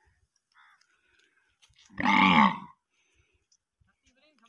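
A single short, loud vocal call about two seconds in, falling in pitch; a few faint clicks around it.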